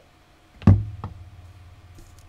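A single knock on the work table about two-thirds of a second in, followed by a low hum that fades slowly.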